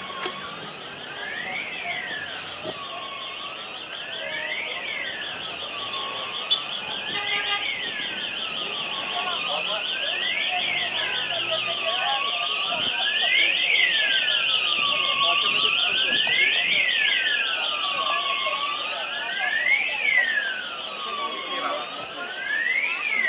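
Emergency vehicle sirens: a slow wail rising and falling about every three seconds over a fast warbling tone, growing louder toward the middle and easing off a little near the end.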